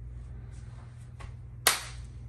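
A single sharp slap of two palms meeting as two men clasp hands, near the end, over a steady low room hum.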